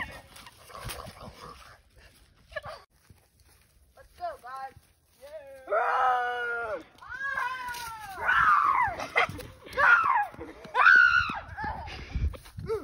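Young girls' play-acted screams: a run of long, high cries that rise and fall, starting about four seconds in and loudest from about six seconds on.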